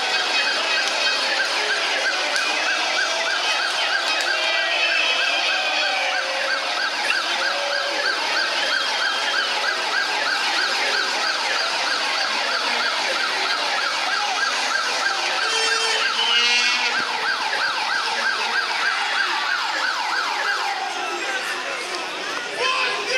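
A siren sounding in a fast, even warble without a break, over the noise of a large street crowd, with a few short rising whistle-like glides about two-thirds of the way through.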